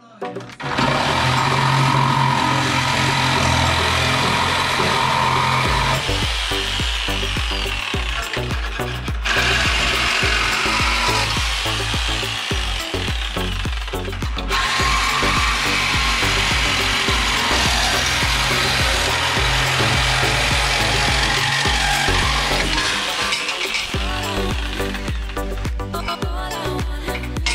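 Reciprocating saw cutting through a car's radiator support, starting about a second in and running steadily, over background music.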